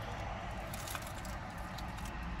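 Someone biting into and chewing an Egg McMuffin, with a few faint crackles from its paper wrapper, over a car's low, steady rumble.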